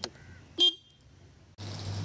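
Scooter's electric horn tooted once, briefly, about half a second in. A steady low hum sets in near the end.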